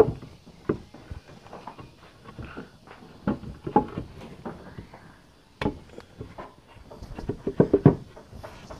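Loose wooden boards knocking and scraping as they are slotted back into the front door panel of a wooden sheep pen to close it. The knocks are irregular: a sharp one at the start, another about halfway through, and a quick run of knocks near the end.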